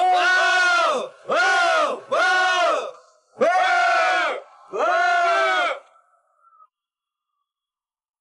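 A group of men shouting a battle cry in unison: five long calls, each rising and falling in pitch, with short gaps between them. They stop about six seconds in.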